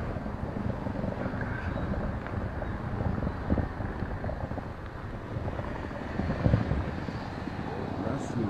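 Outdoor street noise: an uneven low rumble of wind buffeting the phone's microphone, mixed with traffic.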